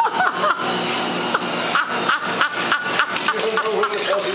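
Treadmill motor and belt running with a steady hum, with irregular knocks and clatter from the dog landing on and scrambling across the deck.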